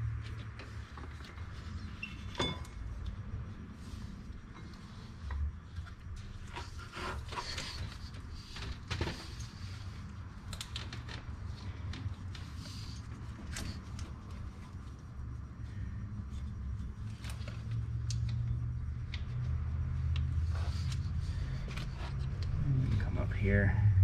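Scattered light clicks, taps and rustling as a serpentine drive belt is worked by hand around the engine's pulleys, over a steady low hum.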